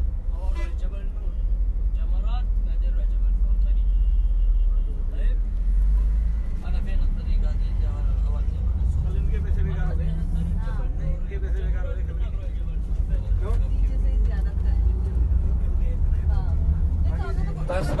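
Steady low rumble of a tour coach's engine and road noise inside the passenger cabin, with faint voices.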